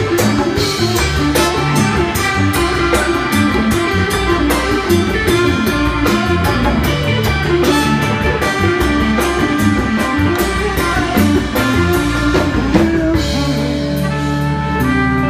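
Live band playing: electric guitar, bass, trumpet, drum kit and congas over a steady drum beat.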